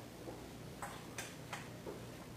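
Three sharp clicks about a third of a second apart in the second half, over a steady low hum.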